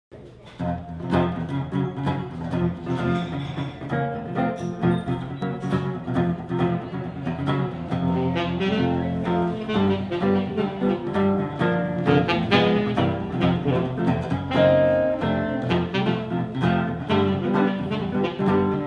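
Live acoustic guitar and saxophone playing a jazz tune together, the guitar plucking and strumming chords under the saxophone.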